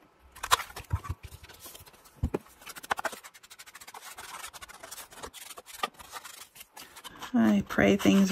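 Handheld corner punch snapping through the corners of a paper page: a few sharp clicks over the first three seconds, the first the loudest. Then an ink blending tool rubs and dabs softly along the paper's edges.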